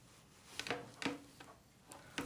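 Faint handling sounds of a curling iron and hair: a few soft short rustles and clicks as the hair is slid off the hot barrel, about half a second and one second in.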